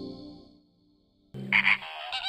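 A flock of American flamingos calling: a low croaking note starts suddenly about a second and a half in, followed by goose-like honks. Before that, soft theme music fades out into a moment of near silence.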